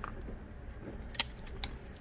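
A few sharp, small metallic clicks as the oil pump of a Juki DU-1181N sewing machine is handled and fitted back into place, over a low steady hum.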